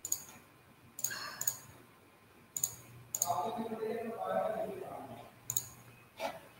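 Scattered sharp clicks of a laptop being worked, about seven spread over the few seconds, with a faint, muffled voice in the middle.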